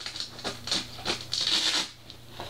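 Fabric rustling and scratching as the top of a soft fabric toy farmhouse is pulled open by hand. It gets louder and scratchier for about half a second just after the middle.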